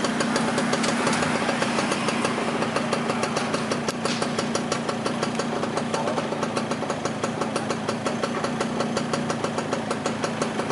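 An engine idling steadily nearby, with a low hum and a fast, even ticking beat.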